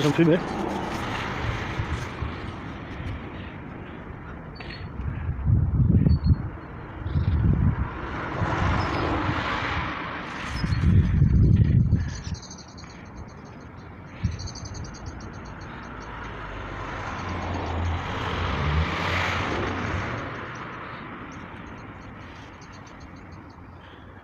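Outdoor construction-site ambience with wind buffeting the microphone in several low gusts through the first half, and a broad swell of traffic noise rising and fading twice.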